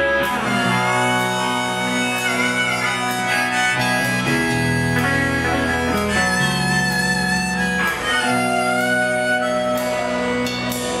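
Live rock band playing an instrumental break: electric guitar and drums with cymbal crashes, sustained chords changing every second or two under a held lead line.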